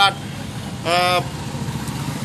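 Steady low rumble of vehicle engines in the background, with one short flat-pitched tone about a second in.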